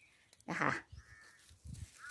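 A single short call about half a second in, followed by a faint thin tone; otherwise quiet.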